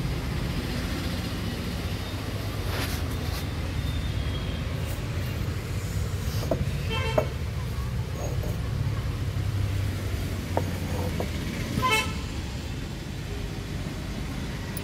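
Steady low traffic rumble with two short vehicle horn toots, one about seven seconds in and one near the end, and a couple of faint knocks.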